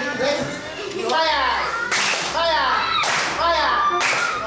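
A class of schoolchildren clapping together in a patterned classroom clapping routine. Sharp claps alternate with rising-and-falling group voices roughly once a second.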